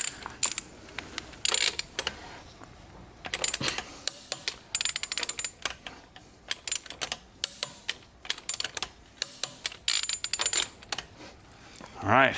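Ratchet head of a click-type torque wrench clicking in quick runs with short pauses between them, as exhaust bolts are tightened.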